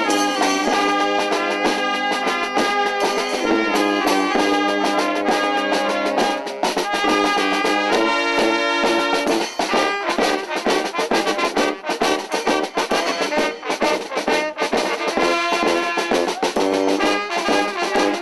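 Brass-band carnival music, with trumpets and trombones playing steadily.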